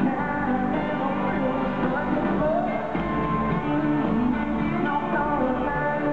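Live country band playing loud, amplified music in an arena, with guitars carrying the song.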